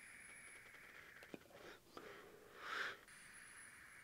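Mostly near silence while someone draws on an e-cigarette, with faint airflow and one short, soft breathy inhale near three seconds in.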